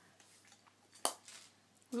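A small plastic ink pad case clicks once, sharply, about halfway through, against quiet room tone.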